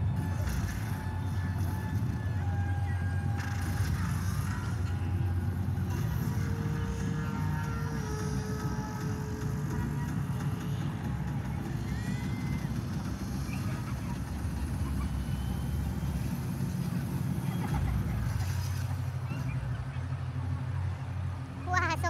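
Steady low rumble of outdoor city ambience, with faint music and distant voices over it.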